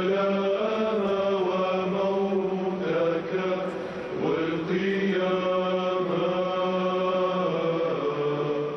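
Male choir chanting, with a low note held steady beneath the moving melody. The singers break off briefly about four seconds in, then carry on.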